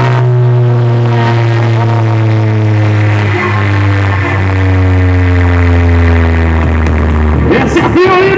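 Loud electronic music through a car sound system of Spayder Kaos 9.0 speakers and Soundigital EVO 100K modules. A single deep bass note is held for about seven seconds and slowly falls in pitch, then cuts off shortly before the end.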